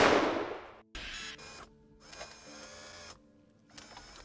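Film sound effects of an automated sentry gun: a loud blast from a burst of gunfire dies away in the first second, then the gun's mechanism whirs in three short stretches as it runs out of ammunition. A faint low music drone sits underneath.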